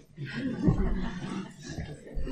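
Laughter from a lecture audience after a joke: a soft, mixed murmur of laughs lasting about a second and a half.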